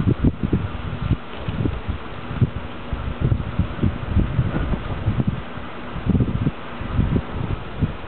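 Wind buffeting the microphone in uneven gusts, over a faint steady hum from a running microwave oven with a spray-paint can inside. The hum fades out about a second and a half before the end.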